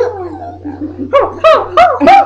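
A one-year-old girl squealing and laughing: a falling squeal at the start, then short high-pitched yelps about three a second from about a second in.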